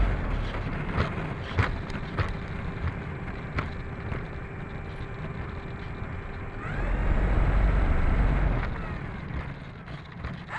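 The brushless electric motor and propeller of an E-flite Turbo Timber RC plane whir as it taxis on pavement. The wheels knock over the pavement joints a few times in the first few seconds. About seven seconds in, the throttle opens and the motor pitch rises into a louder run with rumble on the onboard microphone, then it eases off near the end.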